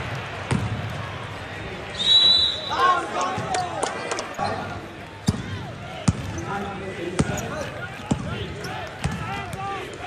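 A basketball bouncing on a hard gym court during play, with sharp thuds scattered through. There is a short high squeak about two seconds in, and players' voices.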